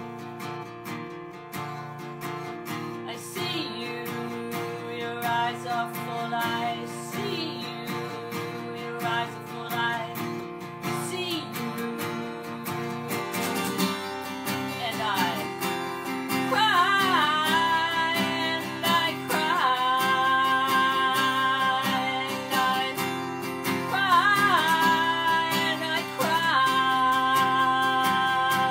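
Acoustic guitar strummed steadily, with a woman singing over it. The music grows louder about halfway through, and the singing turns to long, held, wavering notes.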